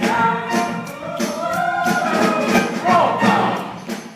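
A musical-theatre cast singing together over accompaniment with a steady beat. The music drops away near the end.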